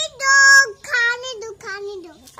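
A young child's high voice in a sing-song chant: three drawn-out phrases, the last one lower.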